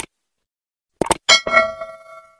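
Subscribe-button sound effects: a short mouse click, then about a second later two quick clicks and a bright bell chime, struck twice, that rings on and fades.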